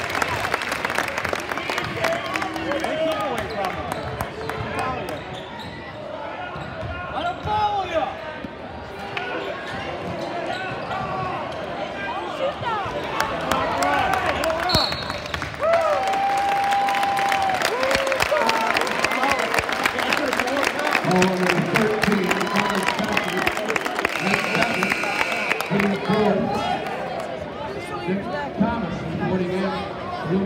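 Basketball game in a gymnasium: a crowd talking and shouting over a basketball bouncing on the court.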